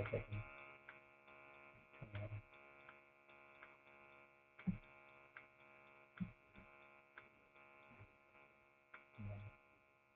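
Near silence: a faint steady electrical hum, with a few faint scattered clicks and short bumps.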